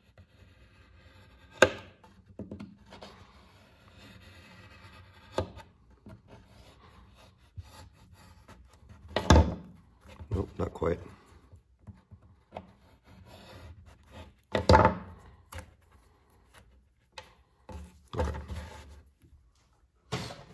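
Leatherwork handling on a wooden workbench: a pocketknife scraping and trimming wet leather, with rubbing and a few sharp taps. Two louder knocks land about halfway and three-quarters of the way through.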